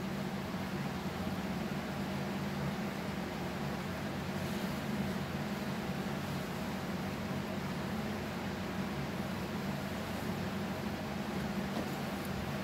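Steady low mechanical hum of room ventilation, unchanging throughout.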